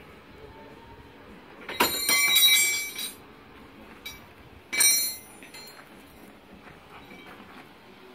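High metallic clinking with a ringing edge, heard twice: a longer burst about two seconds in and a shorter one about five seconds in.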